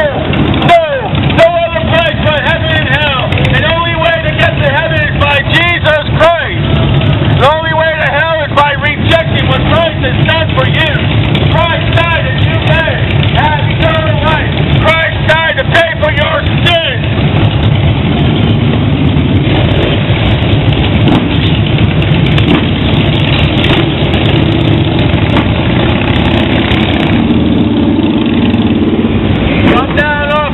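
Harley-Davidson touring and cruiser motorcycles running past in slow street traffic, a steady engine rumble. A voice talks loudly over the engines for about the first seventeen seconds; after that only the engines and traffic are heard.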